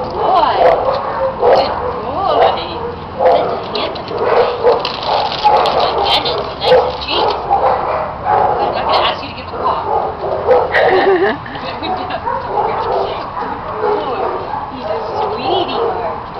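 Dog whining and yipping in a long run of short, wavering calls, its head raised toward a treat held out in front of it. A person laughs about eleven seconds in.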